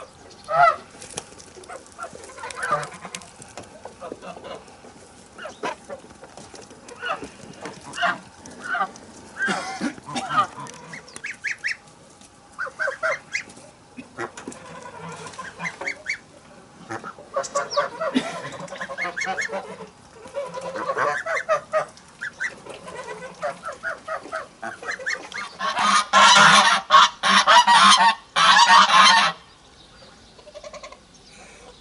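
Domestic geese honking: scattered single calls, then a loud run of honking for about three seconds near the end.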